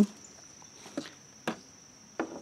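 Two short, faint snips of bonsai pruning shears half a second apart, over a steady high insect trill.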